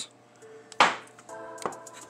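A single sharp tap about a second in, handling noise as the M.2 drive is brought to the motherboard. Soft background music with held notes comes in shortly after.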